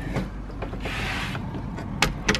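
Lever handle and latch of a keypad door lock being worked as a door is opened, with faint mechanical clicks and a brief rush of noise about a second in.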